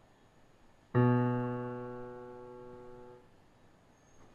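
Electronic keyboard in a piano voice sounding a single low B (the B below the left-hand C) about a second in. The note fades steadily and is released after about two seconds.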